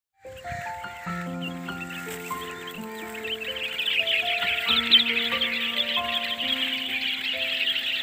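A large crowd of small birds (sparrows, mynas and bulbuls) chirping all at once, a dense continuous chatter that grows louder about halfway through, over slow background music with long held notes.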